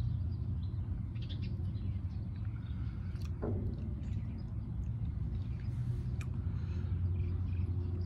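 Steady low outdoor background rumble, with faint small sounds of drinking from a can near the start and a few faint clicks later on.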